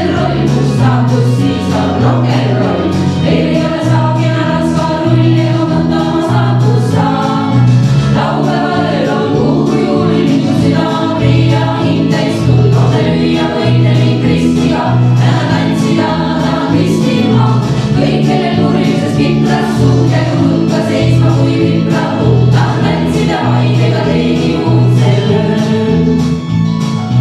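Female vocal ensemble of five singing together into microphones, amplified through a PA. A steady low bass line runs underneath throughout.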